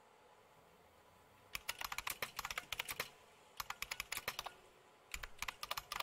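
Typing on a computer keyboard: three quick runs of keystrokes with short pauses between them, beginning about a second and a half in.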